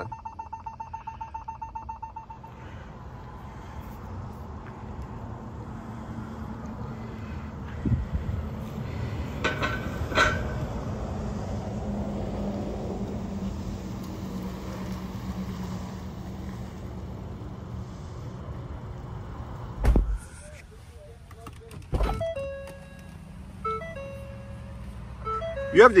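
Ford F-150 Lightning's parking-sensor warning beeping rapidly as the truck creeps right up to an obstacle, stopping about two seconds in. A steady low vehicle hum follows, with two heavy thumps near the end and a few short chime tones.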